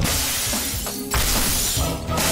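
Film sound effect of glass shattering: two crashes of breaking glass about a second apart, over the background score.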